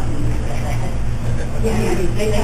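Steady low rumble of room noise, with faint, indistinct voices of people talking around a meeting table that grow a little clearer near the end.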